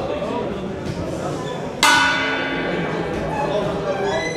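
Boxing ring bell struck once about two seconds in, ringing on and fading, over the murmur of the crowd.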